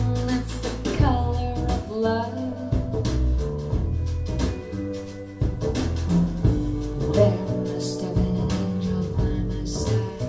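B&W 706 S2 bookshelf speakers playing a song with singing and guitar over a bass line, picked up by microphones about 12 feet away in the listening room.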